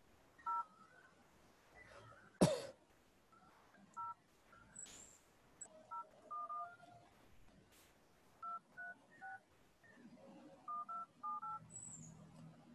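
Phone keypad touch-tones as a number is dialled: a dozen or so short, faint two-tone beeps, pressed one at a time at an uneven pace. There is one sharp click about two and a half seconds in.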